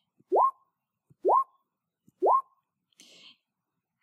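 Interface sound effect of the Fono-lógico speech-therapy app: three identical short rising pops, a little under a second apart, each with a tiny click just before it. A faint brief hiss follows about three seconds in.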